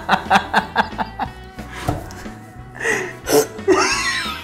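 Two men laughing hard over light background music, in quick rhythmic bursts of laughter that grow louder near the end.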